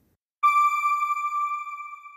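A single electronic chime tone, a logo sting for the end card, striking about half a second in and fading out over about two seconds.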